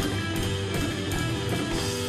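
Rock music: guitar over a steady drum beat.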